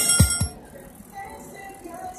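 Quick Hit slot machine's win-tally jingle: rhythmic chimes over low thumps that stop about half a second in as the credit meter finishes counting up. A much quieter background of faint electronic tones follows.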